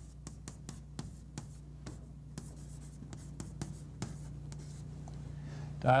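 Chalk tapping and scratching on a chalkboard as a word is written: a quick run of short sharp clicks and brief scrapes, over a steady low hum.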